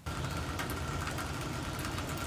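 Rain falling steadily on a wet wooden deck, a dense patter of drops over an even hiss. It starts suddenly, and a steady tone and a low rumble run underneath.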